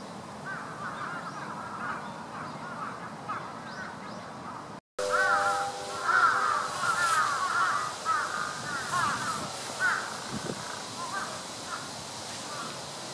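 Many birds calling over one another in short, repeated calls. The sound cuts out for a moment about five seconds in and comes back louder.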